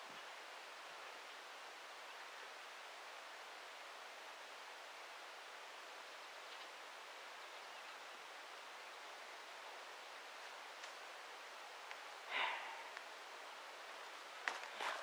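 Faint, steady outdoor background hiss with no distinct source, and one short soft rustle or breath about twelve seconds in.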